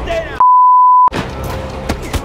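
A loud, pure, steady censor-style bleep tone, cut in abruptly about half a second in and lasting about two-thirds of a second, with all other sound dropped out beneath it. A short falling sweep leads into it, and the film soundtrack resumes straight after.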